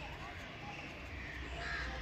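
A crow cawing faintly.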